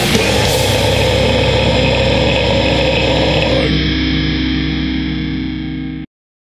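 The final chord of a melodic death metal song: a heavily distorted electric guitar and bass chord held ringing after the drums stop. It fades slowly, then cuts off abruptly at the very end.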